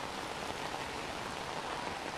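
Steady rain falling, an even hiss without breaks.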